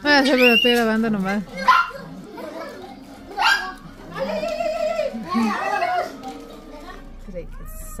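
Young children shouting and squealing excitedly as they run around playing, in several loud bursts of high, wavering voices, quieter after about seven seconds.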